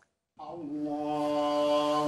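A man's voice chanting an Islamic prayer recitation during congregational prayer. The chant begins about half a second in, holds one long steady note, and moves in pitch near the end.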